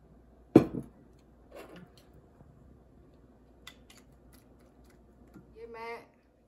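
Glassware and a small plastic bottle handled on a table: one sharp knock about half a second in that rings briefly, then a softer knock and a faint click.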